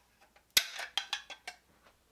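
Handling noise from a caulking gun and tools: one sharp knock about half a second in, then a few lighter, irregular clicks and rattles.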